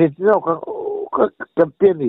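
Speech only: a man talking in a storytelling interview, with one briefly drawn-out syllable in the middle.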